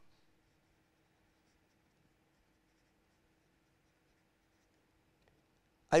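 Pen writing on paper: faint scratching as words are written out, over a low steady hum.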